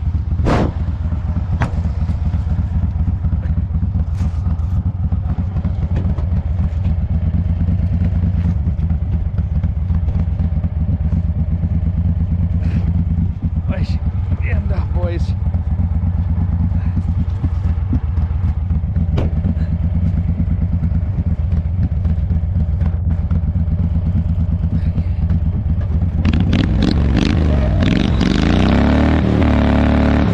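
Wheel Horse garden tractor engine running steadily under load, with scattered knocks and clatter from the machine bouncing over rough snow. Near the end the engine revs up and grows louder.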